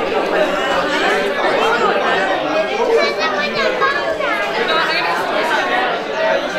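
Crowd chatter: many people talking at once in a large room, with no single voice standing out.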